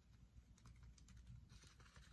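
Near silence with a few faint small clicks from a plastic fashion doll and its clothes being handled.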